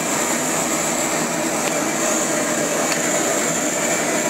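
Steady machinery noise with a constant high whine.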